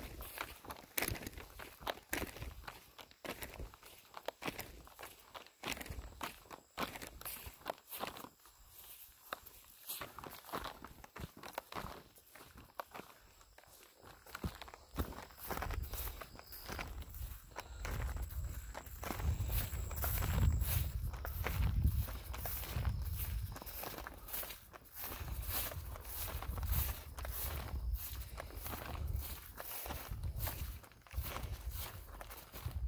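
Footsteps of a person in waterproof rubber boots walking at a steady pace over wet, muddy ground and grass. In the second half a low rumble rises under the steps.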